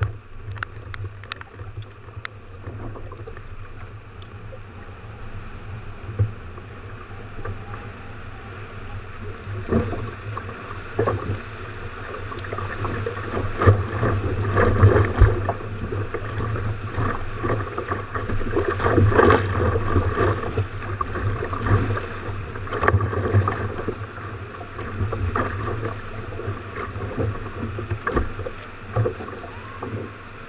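Sea water sloshing and splashing against a sea kayak's hull as the swell surges around it in a narrow rock channel. The splashing grows louder about ten seconds in and eases off near the end.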